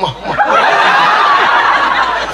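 A large audience laughing together, many voices at once, starting about half a second in and holding steady.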